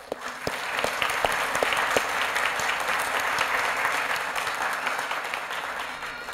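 Audience applauding, a crowd of many hands clapping, which tapers off near the end.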